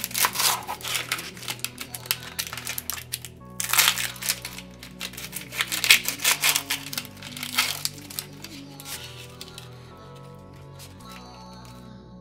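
Dry onion skin crackling and crinkling as it is peeled and cut away from an onion with a knife, coming in three spells over the first eight seconds or so and then dying away. Background music plays throughout.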